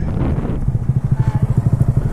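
Honda Grom's single-cylinder engine running at low revs with a steady pulsing beat.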